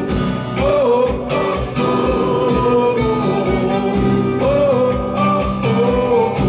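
Live band playing: a man singing long, wavering held notes over acoustic guitar, electric bass and a steady beat.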